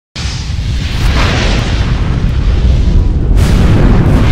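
Cinematic explosion sound effect: a loud, deep, continuous rumble with a swelling whoosh about a second in and a sharp blast near the end.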